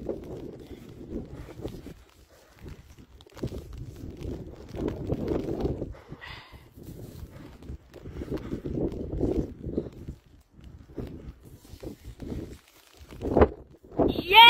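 A man straining to lift a heavy round stone: hard, effortful breathing and grunts through the effort, in bursts of a second or two, with a short louder grunt near the end as he stands with it.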